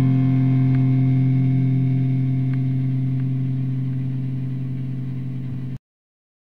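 A heavily distorted electric guitar chord ringing out as the song's last held chord, fading slowly, then cut off abruptly near the end.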